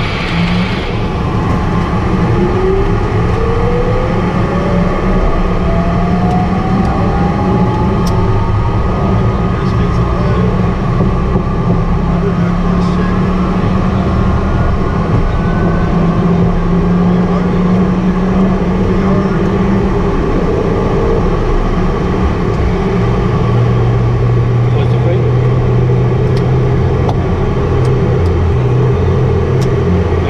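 Light aircraft's engine at takeoff power through the takeoff roll and liftoff, heard inside the cockpit as a loud, steady drone with a whine that rises in pitch over the first several seconds.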